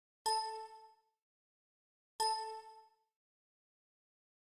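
Two identical bell-like dings, about two seconds apart, each struck sharply and ringing out within about a second: a chime sound effect.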